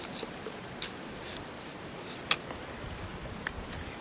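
Steady outdoor background hiss with a few light, scattered clicks and taps; the sharpest comes a little past two seconds in.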